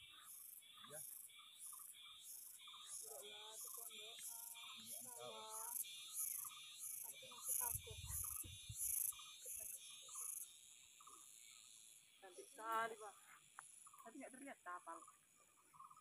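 Faint, rhythmic high-pitched insect chirping, about two chirps a second, stopping about ten seconds in, with faint voices in the background.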